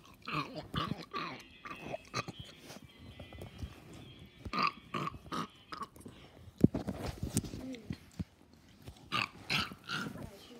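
Loud, wet open-mouthed chewing and lip smacking right at the microphone, in several bursts with pauses between, and a sharp click about two-thirds of the way through.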